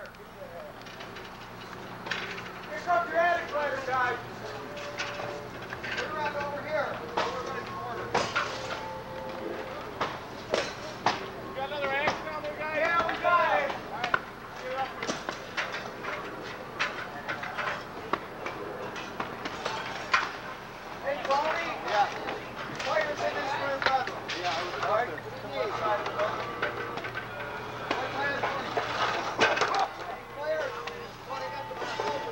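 Voices of firefighters shouting at a distance, with scattered knocks and thuds throughout and a steady low hum underneath.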